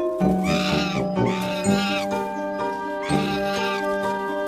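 Background music with steady held notes, over which a young monkey gives two wavering, whining cries, one near the start and another about three seconds in.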